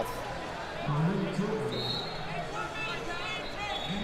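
Wrestling-arena ambience: distant voices of coaches and spectators calling out, with dull thumps from the wrestlers' feet on the mat. A brief high tone sounds about one and a half seconds in.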